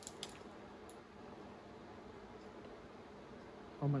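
Quiet room tone, with a few faint clicks right at the start from a wrapped candy being handled.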